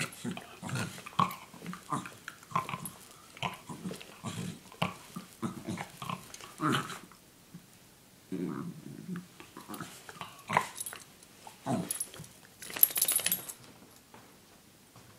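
Small terrier waking in its bed, making short grunting dog noises while it rolls and stretches, with the bedding rustling under it. A louder rustle comes near the end as it gets up.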